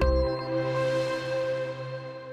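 Electronic ident jingle music: the beat and bass stop just after the start, leaving a held chord that rings on and slowly fades out.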